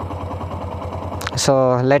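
Honda SP125's single-cylinder engine idling steadily at a standstill.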